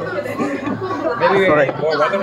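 A group of people talking over one another, with excited shouts of "Oh!".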